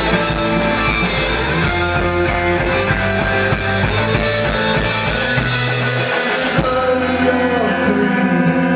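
Live rock band playing an instrumental passage: two distorted electric guitars, a Les Paul and an SG, over drums and electric bass. The lowest notes drop out briefly about six seconds in.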